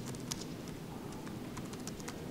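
Laptop keyboard being typed on: a run of separate keystroke clicks at an uneven pace as a command is entered.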